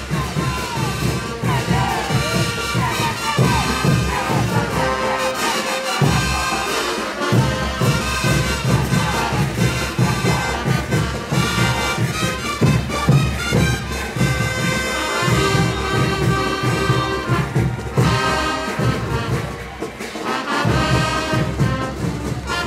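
Live brass band playing caporales music: trumpets, trombones and sousaphones over a steady bass-drum beat. The low drums and bass drop out for about two seconds midway and again briefly near the end.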